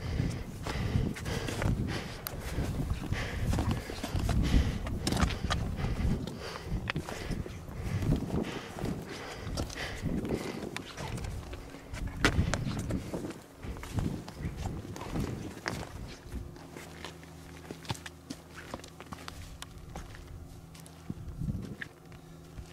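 Footsteps of hikers in crampons on rock, wet moss and snow: irregular heavy steps with sharp clicks and scrapes from the spikes. It grows quieter and steadier for the last few seconds.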